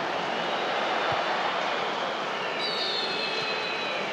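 Steady noise of a large stadium crowd at a football match, heard through the TV broadcast sound; high whistling tones rise over it in the last second and a half.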